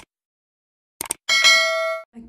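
Subscribe-button sound effect: a short click at the start and a quick few clicks about a second in, then a bright bell ding that rings on and fades near the end.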